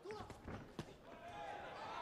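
Several short, sharp thuds of blows and footwork in a kickboxing ring in the first second, then a rising swell of crowd noise.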